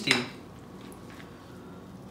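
Metal fork clinking against a glass dish, one sharp clink right at the start, followed by a few faint clicks.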